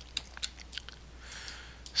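Quiet room with a few faint, scattered clicks close to the microphone, then a soft intake of breath near the end.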